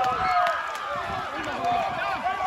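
Many voices from a football crowd and sideline, shouting and cheering over one another after a play. The noise is loudest at the start and eases off after about half a second.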